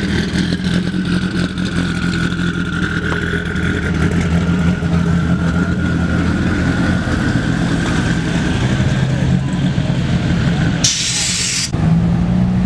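Dodge Viper V10 engines running at low speed as the cars roll slowly past, a steady low drone with a faint whine above it. About 11 s in, a brief loud hiss lasts under a second.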